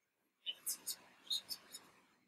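A short whispered phrase, with several sharp hissing consonants, starting about half a second in.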